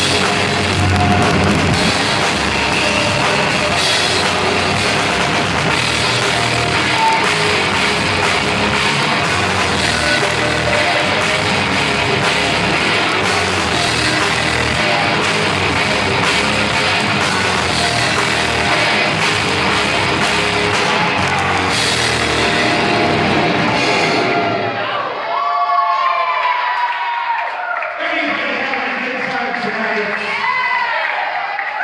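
Industrial metal band playing live and loud, drum kit and guitar driving a song. The song stops abruptly about 25 seconds in, followed by crowd cheering and shouts.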